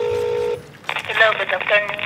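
Telephone ringing tone heard through a mobile phone's loudspeaker: one steady tone that stops about half a second in. It is followed by a voice coming over the phone line.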